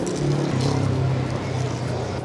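A motor vehicle's engine hum, growing about half a second in and then slowly fading, as of a vehicle going by on the road.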